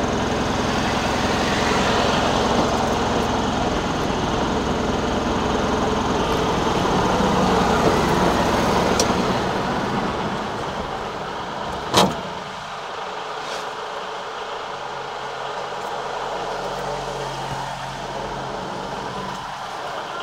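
Stationary vehicle's engine idling with street noise, heard from inside the cabin. The hum fades down about ten seconds in, a single sharp click sounds about two seconds later, and a quieter steady hum follows.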